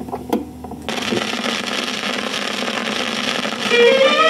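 Stylus dropping onto a spinning 45 rpm vinyl single: a sharp click early, then from about a second in the steady hiss and crackle of the lead-in groove. The record's music starts just before the end.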